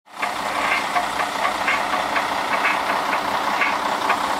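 Mercedes-Benz Axor truck's diesel engine idling steadily, with a regular ticking about four times a second over the engine's run.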